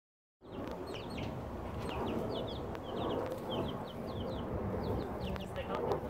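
Young chicks peeping: a run of short, high cheeps, several a second, each sliding in pitch, over a steady low background rumble.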